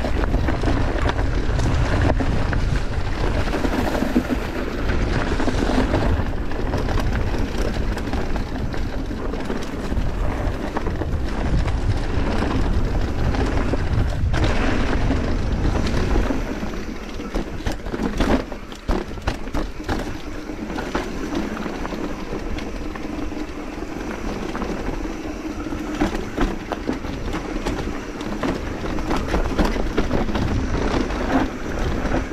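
Mountain bike riding downhill on a dirt trail: tyres rolling over dirt and leaves, with wind buffeting the microphone as a heavy rumble. About halfway through the rumble eases, and frequent sharp clicks and knocks from the bike rattling over rougher, stonier ground take over.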